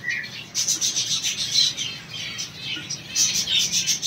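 A flock of caged finches chirping together: a dense chatter of many short, high, overlapping calls, with a brief dip just after the start.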